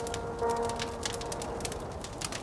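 Fire crackling with many irregular sharp pops, under the faint held notes of music fading out.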